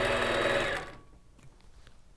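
Longarm quilting machine running steadily as it stitches free-motion quilting, then winding down and stopping about a second in.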